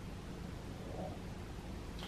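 Quiet room tone: a faint steady low hum with light hiss, and no distinct sound standing out.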